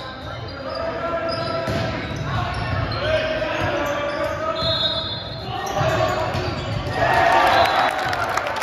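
A volleyball rally echoing in a school gymnasium: the ball is struck with sharp slaps while players and spectators shout. The voices swell into a louder burst of cheering about seven seconds in, as the point is won.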